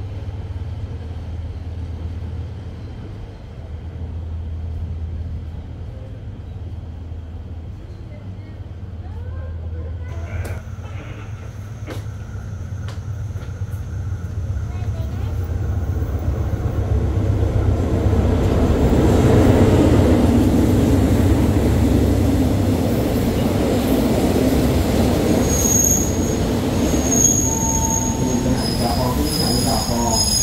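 Diesel-hauled passenger train pulling into the station: a low engine hum at first, then a rumble that builds through the middle, and high-pitched brake and wheel squeals near the end as it slows at the platform.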